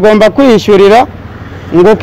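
A man speaking in an interview, pausing for about two-thirds of a second around the middle, where only low background noise is heard.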